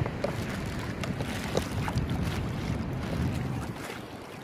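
Wind buffeting the microphone in a steady low rumble, over shallow seawater sloshing as someone wades through it.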